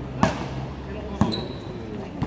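A basketball hitting hard twice, about a second apart, as a shot goes up at the hoop.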